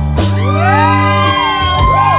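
Live band playing, with steady bass notes underneath. Several voices swoop upward in whoops into long held notes and then begin to slide back down.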